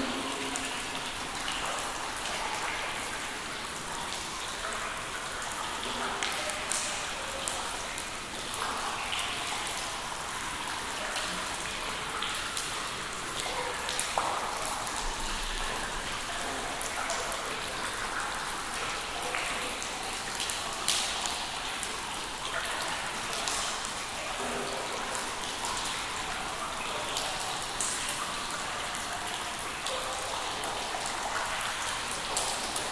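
Water drops falling irregularly into still water in a cave, each drip a sharp click or short pitched plink, over a steady hiss of more dripping and trickling water.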